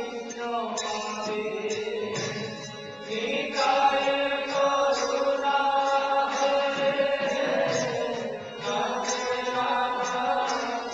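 Devotional kirtan: voices chanting a mantra to musical accompaniment, with a steady high beat about twice a second.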